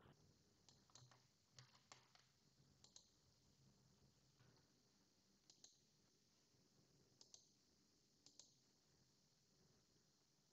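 Near silence with scattered faint computer mouse clicks.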